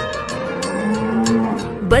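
A cow mooing: one long low moo about halfway through, over the rhyme's instrumental backing music.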